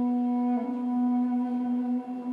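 Armenian duduks playing a long held low note, steady with a small shift in pitch about half a second in.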